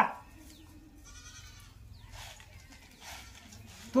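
A quiet pause with low background noise, and one faint, short animal call about a second in.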